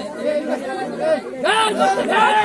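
Crowd of men talking and shouting over one another, getting louder about one and a half seconds in.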